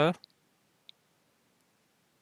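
Near silence with two faint, short clicks, one about a quarter second in and one about a second in.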